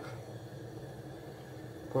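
Low, steady background noise with no distinct events: room tone in a pause between words.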